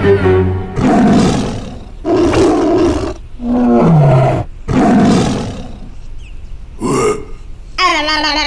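Cartoon creature vocal sound effects: four rough, raspy bursts of about a second each, with a short falling cry between the second and third and a brief burst near the end.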